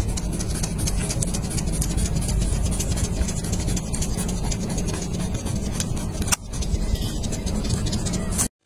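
Steady, loud low rumble of background machine-like noise throughout, with frequent short clicks and scrapes of a knife blade against a wooden cutting board as it slices and scores fish. A sharper click stands out about six seconds in.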